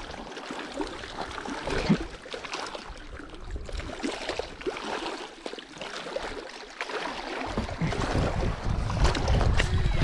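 Footsteps crunching on gravel and loose rock, in many short irregular steps. Wind rumbles on the microphone through the last couple of seconds.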